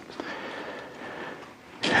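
A quiet pause: faint steady room noise with one light click just after the start, and a man's voice returning near the end.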